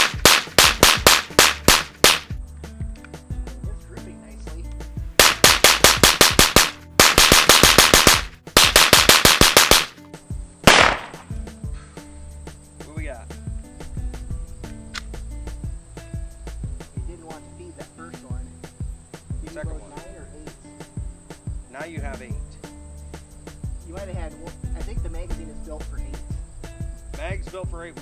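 A Hi-Point C9 9mm semi-automatic pistol fires Pyrodex black-powder loads in rapid strings of shots through the first ten seconds, then one last shot a little later. The gun is still cycling despite heavy, gummy black-powder fouling.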